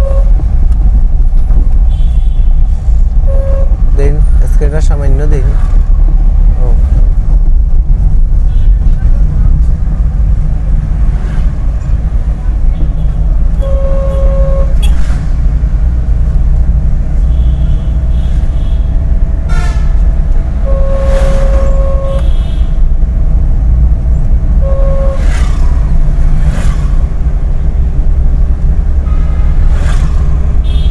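Steady low engine and road rumble inside a moving car's cabin, broken by five short vehicle-horn toots. The longest toot is held for about a second and a half about two-thirds of the way through.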